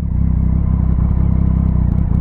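Motorcycle engine idling steadily while stopped at a traffic light, a low even hum with no revving.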